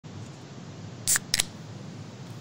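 Two quick, sharp clicks about a quarter second apart, about a second in, over a faint steady hum.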